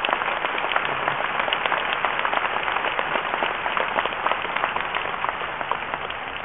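A large crowd in an arena applauding: dense, steady clapping that eases slightly near the end.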